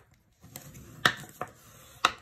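Quiet handling of cardstock: a few light clicks and taps as the card is folded along its score lines and a bone folder is picked up off the paper, the sharpest click about a second in.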